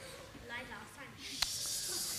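A child whispering, a soft breathy hiss of whispered words that starts about halfway through, with faint voices in the room before it.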